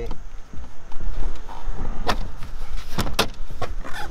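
Hard-shell suitcases and a cooler box being shifted around in a car's boot, with sharp knocks about two seconds in and two more close together a second later.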